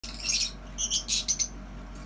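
Caged lovebirds chirping: a handful of short, shrill calls in the first second and a half, then a lull.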